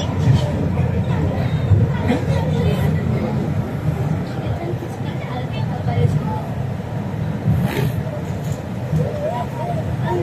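Steady low rumble of an MRT Putrajaya Line train running along elevated track, heard inside the passenger cabin, with passengers' faint chatter over it.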